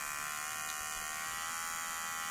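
Nova NHT-1046 cordless hair trimmer switched on, its small electric motor and blade running with a steady, even buzz.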